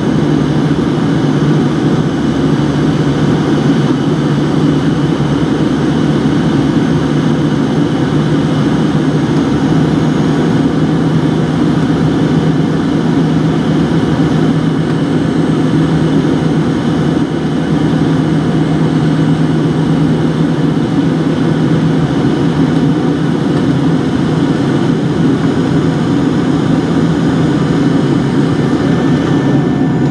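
Steady cabin drone of a Fokker 70 airliner on its approach, heard from a window seat beside its rear-mounted Rolls-Royce Tay turbofan engines. A constant low engine hum sits over rushing airflow, unchanging throughout.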